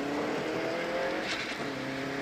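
Rally car engine under full throttle, heard from inside the cabin, climbing in revs and changing up twice.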